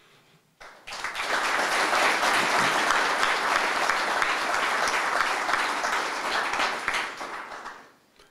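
Audience applauding, starting just under a second in, holding steady, and dying away near the end.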